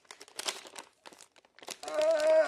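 Crinkling and crackling of a sealed, paper-like licorice bag being twisted and pulled at by hand in an effort to tear it open, with a brief lull a little past halfway. A voice starts just before the end.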